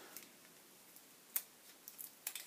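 Cardboard insert from a pen gift box being handled and opened: mostly quiet, with one sharp click a little past halfway and a couple of faint ticks near the end.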